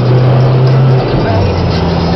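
A song playing loud through a car sound system with 12-inch subwoofers, heard inside the moving car; deep bass notes hold steady and step to a new pitch about a second in.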